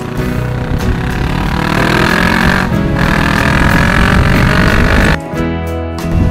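Kawasaki 650 parallel-twin motorcycle engine pulling under acceleration, its pitch climbing steadily, with a brief break about halfway through like a gear change. Background music plays with it.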